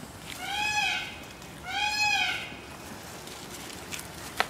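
A moose calf calling twice, two high, nasal cries, each rising then falling in pitch and lasting under a second.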